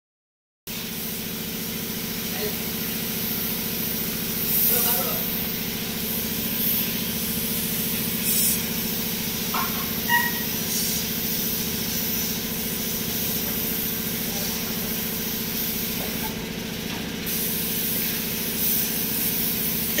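Compressed-air paint spray gun hissing steadily as it sprays paint onto a bus body panel, with a steady low hum underneath.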